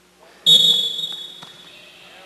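A loud, high whistle that starts suddenly about half a second in and fades over roughly a second, with a shout underneath it.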